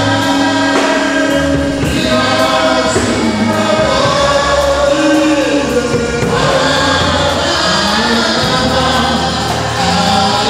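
Gospel choir singing a praise song, with long held notes and gliding phrases.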